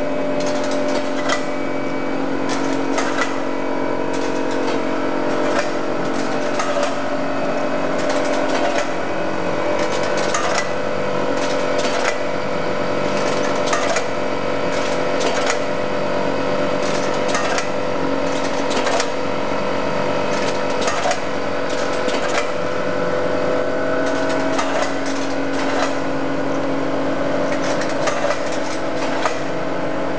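24-channel electronic counting machine running: its vibratory feeder trays give a steady hum with several tones, over frequent irregular clicks and ticks of the counted items and mechanism.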